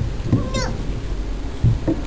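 A toddler's short high-pitched cry, sliding up and then down in pitch, about half a second in, with the low noise of children playing behind it.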